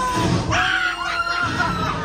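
Shrill screams from several riders break out suddenly about half a second in, over the ride's soundtrack, and last about a second and a half.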